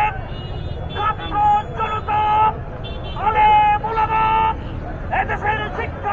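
Slogans chanted in a man's shouted voice through a megaphone: short, steady-pitched syllables in three rhythmic bursts with brief pauses between, over the low rumble of a crowd.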